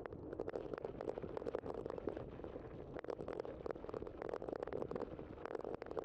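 Bicycle tyres rolling over a packed dirt and gravel path: a steady low rumble with many small irregular clicks and rattles.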